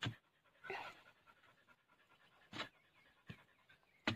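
A dog panting faintly: a few short, separate breaths.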